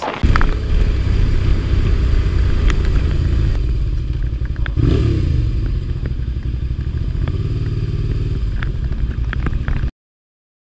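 Motorcycle running at low riding speed, picked up by a camera mounted on the bike, with wind rumbling on the microphone and a few sharp clicks. The sound cuts off suddenly just before the end.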